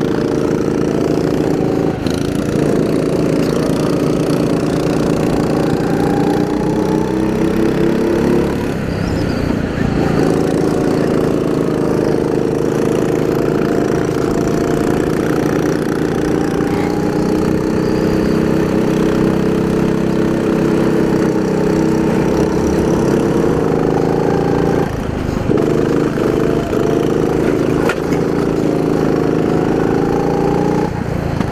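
Racing kart's small single-cylinder engine running hard close to the microphone, with wind and road noise over it. The engine note drops off twice, about a third of the way in and again near the end, as the kart comes off the throttle for corners, then picks up again.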